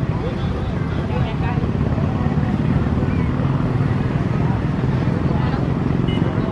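A steady low rumble, with people's voices talking indistinctly over it.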